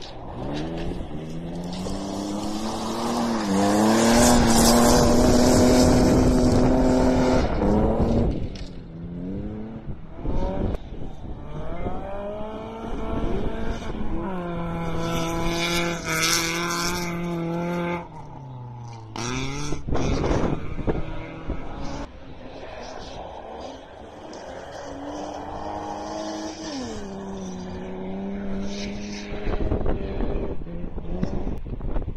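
Rally car engines revving hard as cars pass one after another. The pitch climbs through the gears, holds high, then drops off as each car lifts. The loudest pass comes about four to eight seconds in.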